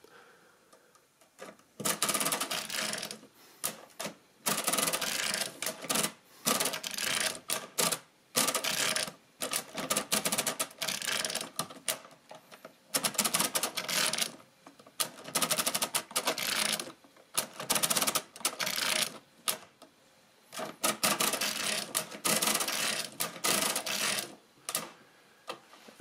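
Mercedes-Euklid Model 29 mechanical calculator's proportional-lever mechanism clattering as it is cycled through subtraction, its toothed racks and gears moving. The rattling comes in about a dozen runs of one to two seconds each, with short pauses between them.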